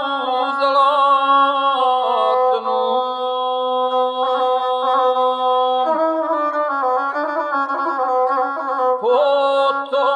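Gusle, the single-string bowed folk instrument, played with a male guslar's singing voice in an epic song, in long held notes with the pitch stepping about two, six and nine seconds in.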